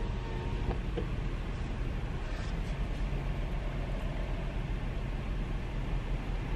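Car idling in a drive-thru lane, a steady low engine rumble heard from inside the cabin.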